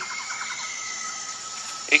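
Crickets and other insects trilling as a steady, continuous high drone, with a voice beginning to speak at the very end.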